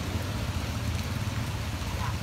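Steady rain falling on standing floodwater, an even hiss with a low steady rumble beneath it.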